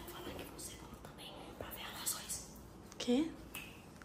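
Hushed, whispered speech, with a short spoken phrase near the end.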